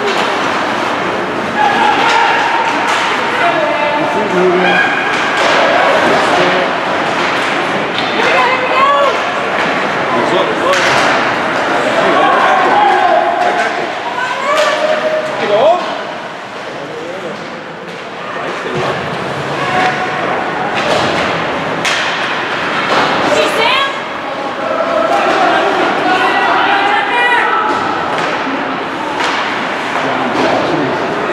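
Ice hockey game at rinkside: many indistinct voices talking and calling out at once, with thuds and slams from the puck and players hitting the boards. The noise dips briefly about halfway through.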